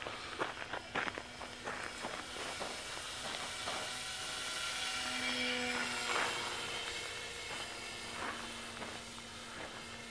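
Skytrainer 400 radio-controlled model plane's motor and propeller whining at about three-quarter throttle, swelling as the plane passes low about six seconds in, then fading as it climbs away.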